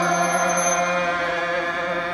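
A large group of voices chanting a Hindu prayer in unison, holding one long steady note.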